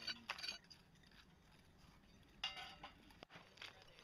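Faint, scattered clinks and scrapes of hand trowels and loose stone slabs knocking against stone as an excavated surface is cleaned, with a longer scrape a little over halfway through.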